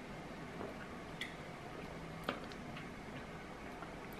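Faint swallowing and lip-on-glass sounds from someone drinking cola from a glass: a few small soft clicks, about one and two seconds in, over low room hiss.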